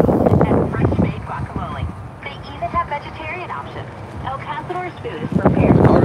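Wind buffeting the phone's microphone in loud gusts at the start and again near the end, with faint voices of people talking in between.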